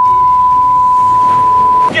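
A censor bleep: one continuous high-pitched beep at a single steady pitch, held for about two seconds and cutting off abruptly just before the end.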